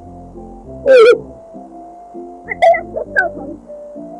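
Cartoon soundtrack: soft background music with a short, loud, wavering warble about a second in and a few brief chirps later on.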